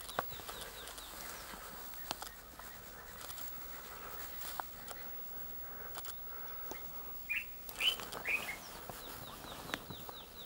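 Wild birds calling: runs of short, quickly falling chirps, with a few louder calls about seven to eight and a half seconds in. A few faint clicks are scattered between the calls.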